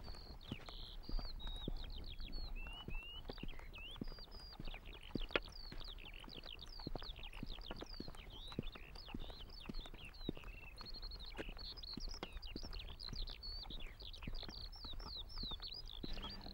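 Birds singing continuously outdoors, a dense run of quick high chirps and trills, over a low steady rumble with scattered faint clicks.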